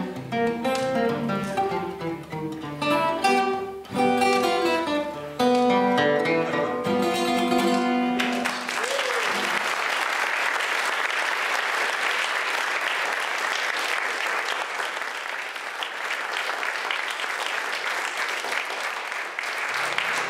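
Piedmont blues played on an acoustic guitar, ending about eight seconds in on a held final note. Then the audience applauds steadily until near the end.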